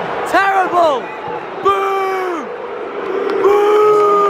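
A nearby man shouting several long calls, each held and then dropping in pitch at the end, over the steady noise of a football stadium crowd.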